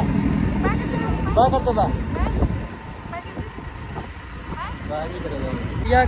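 Low rumble of wind on the phone's microphone and road noise from a moving two-wheeler, with a few brief voices in the first couple of seconds. The rumble eases off about halfway through.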